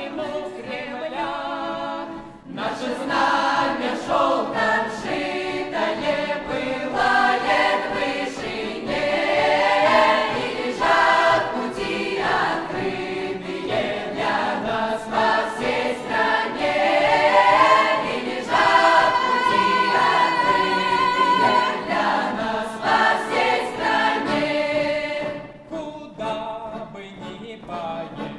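Mixed folk choir of young women's and men's voices singing a Russian folk-style song in several parts. A small folk instrument ensemble accompanies the singing, and the full choir comes in louder about two and a half seconds in.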